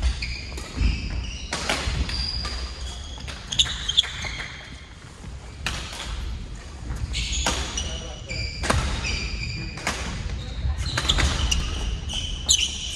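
Badminton doubles rally on a wooden court: sharp racket strikes on the shuttlecock every second or two, mixed with short high squeaks of players' shoes on the floor, echoing in a large hall.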